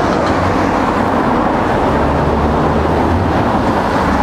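Steady street traffic noise, a loud low rumble.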